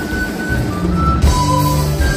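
A band playing morenada dance music, with long held melody notes over a steady low beat and bass line.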